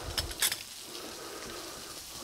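A few light knocks and clinks in the first half second as boiled potato pieces are spooned from a pot into a stainless-steel potato ricer, then only faint room noise.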